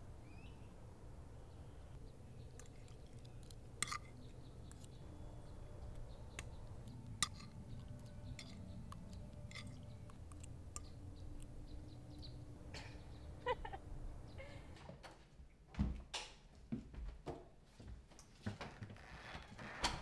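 Outdoor ambience: a steady low rumble with scattered small clicks and a couple of short bird chirps. About fifteen seconds in, the rumble cuts off and a few louder knocks and thuds sound in a quieter room.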